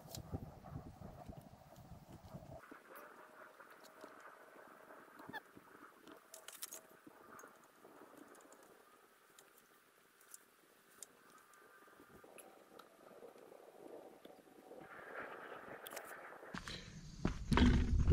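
Quiet outdoor background with faint, intermittent bird calls and a few small clicks.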